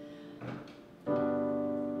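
Electronic keyboard playing piano chords: a held chord fades away, then a new chord is struck about a second in and sustains.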